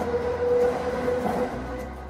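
SkyTrain car running, heard from inside: a steady whine over rolling noise, fading out near the end.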